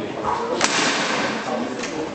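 Foosball table: a sharp crack about half a second in as the ball is struck hard by a rod figure and shot down the table, followed by a fainter knock near the end. Chatter carries in a large, echoing hall.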